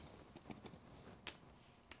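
Near silence with a few faint soft taps: a small blending sponge pouncing ink onto a tissue-paper-textured card.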